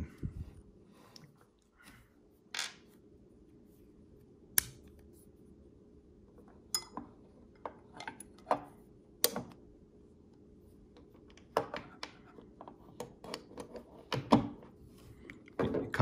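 Irregular small clicks and taps of micarta knife handle scales, screws and washers being handled and pressed onto a Benchmade 375 Adamas fixed-blade's skeleton handle, hard pieces knocking against each other and the wooden table. The clicks come a second or so apart, bunching more closely near the end.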